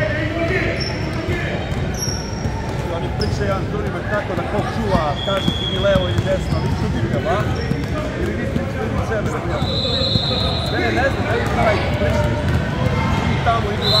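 A basketball dribbled on a hardwood gym floor, with sneakers squeaking, over a steady hubbub of players' and spectators' voices.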